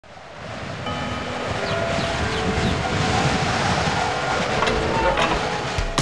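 A dense rushing noise fades in over the first second or two and holds steady, with a sharp hit just before the end.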